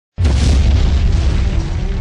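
Cinematic explosion sound effect: a sudden deep boom a moment in, followed by a sustained rumble, with dramatic music underneath.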